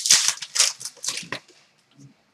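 Trading cards and a foil pack wrapper handled by hand: a quick run of short crinkles and clicks in the first second and a half.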